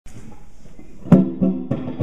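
Fender Stratocaster electric guitar played clean on its neck pickup through an amplifier: a run of plucked notes that starts with a sharp, loud note about a second in.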